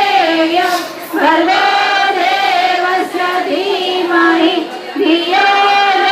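A group of women singing a devotional chant together in unison, in long held notes with short breaks for breath about a second in and near the end.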